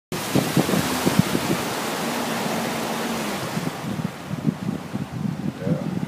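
Motorboat under way: a loud rush of wind and water over the boat, with low knocks of water against the hull. The rush fades about halfway through.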